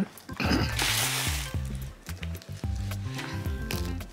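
Background music with a steady bass line, and about half a second in, a rasping rip of about a second as a velcro strap on a child's canvas shoe is pulled open.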